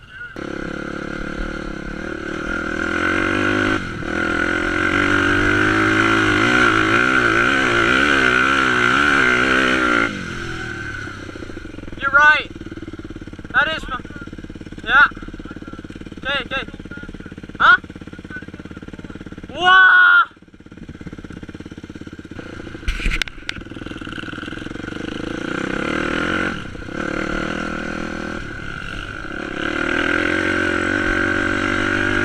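Dirt bike engine running close by, steady with a wavering pitch for about ten seconds, then settling lower and giving several quick throttle blips, and rising again near the end as the bike pulls away.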